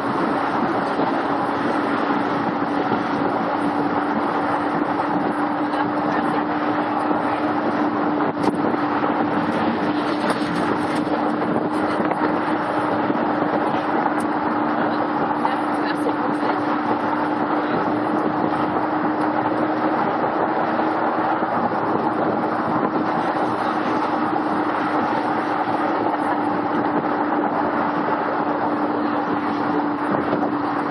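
Steady rush of wind and road noise heard from the upper deck of a double-decker bus driving at speed, with a constant low hum running under it.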